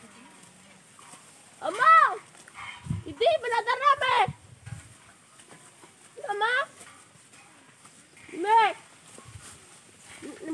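A goat bleating four times, high-pitched calls with a wavering quaver, the longest about three to four seconds in.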